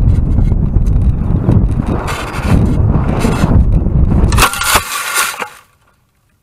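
Wind buffeting the microphone of a model rocket's onboard camera as the rocket comes down, then, about four and a half seconds in, a burst of crackling and rustling as it crashes into tall grass and brush on landing.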